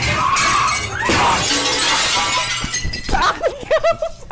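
A glass display case shattering, with broken glass crashing and falling for about two and a half seconds. Voices shout near the end.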